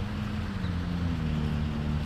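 A steady low engine hum over a low rumble, its pitch sinking slightly, typical of a motor vehicle running nearby.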